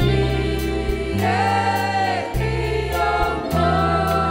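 A choir singing a gospel worship song over instrumental backing, with long, wavering sung notes above steady bass notes that change pitch every second or so.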